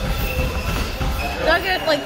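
Low, dense rumbling noise with faint steady high tones. A person's voice starts about one and a half seconds in.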